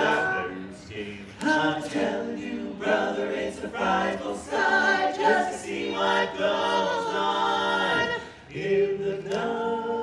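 Four-man barbershop quartet singing a cappella in close harmony, with a short break past the middle and a long chord held near the end.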